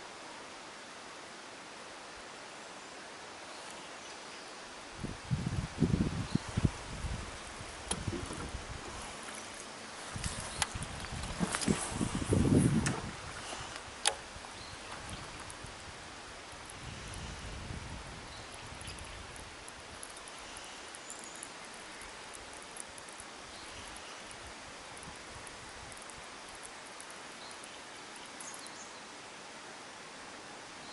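Quiet outdoor ambience with a steady hiss, broken twice by bursts of low rumbling bumps and rustling, about five seconds in and again around eleven to thirteen seconds, with one sharp click just after.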